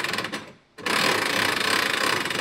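Hand-crank cable winch being cranked, its gears and ratchet pawl clicking rapidly; the clicking stops for a moment about half a second in, then picks up again as a denser, steadier rattle.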